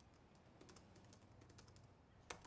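Faint typing on a laptop keyboard: a quick, irregular run of soft key taps.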